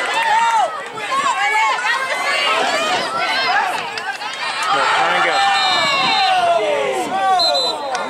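Many high-pitched voices shouting and cheering at once, overlapping with no distinct words: spectators and players yelling during a girls' lacrosse play.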